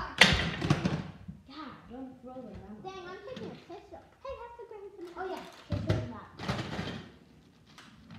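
Children's voices talking and calling out. Just after the start there is a loud clattering thump as a plastic Nerf blaster hits the floor.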